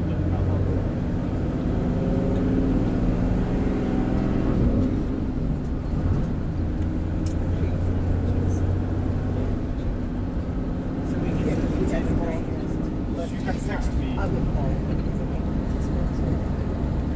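Tour bus engine running with road noise as the bus drives along, heard from inside the cabin: a steady low drone that changes little.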